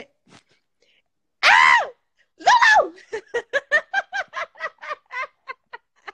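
A woman laughing hard: two loud, high-pitched shrieks of laughter, then a rapid run of short "ha" pulses, about five a second, that fades out near the end.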